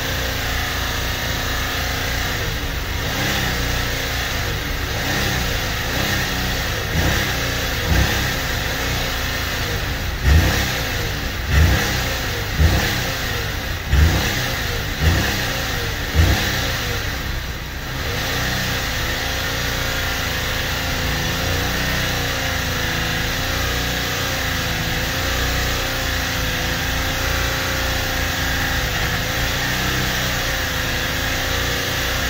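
Buick Lucerne engine held at high revs in park, around 3000 rpm, under a foot-to-the-floor run meant to kill it. Between about seven and sixteen seconds in comes a series of about seven short, louder low surges roughly a second apart. After a brief dip the engine settles back to a steady high drone.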